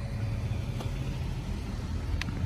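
A steady low rumble, with one faint click a little under a second in.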